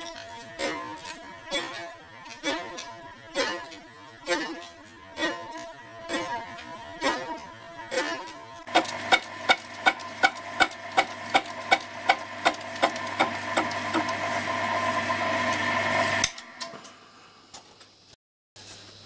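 Milling machine cutting a bronze tube: the rotating cutter ticks about once a second as it takes an interrupted cut. Later, over the machine's motor hum, it ticks faster, about three times a second, and grows louder before cutting off abruptly near the end.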